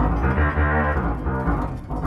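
Synthesized distortion bass played from an electric guitar through an AXON guitar-to-MIDI converter: a run of low bass notes. The distortion patch comes from the converter's fret-splitting, which switches to this sound for notes played at the eighth fret and above.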